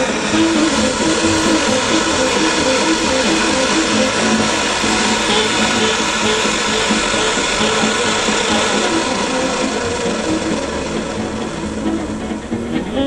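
Pressurised paraffin stove burner running under a kettle with a loud, even hiss; it eases slightly near the end. Background music plays over it.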